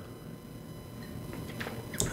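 Faint sips and swallows of hard seltzer from a drinking glass, with a few small soft knocks near the end.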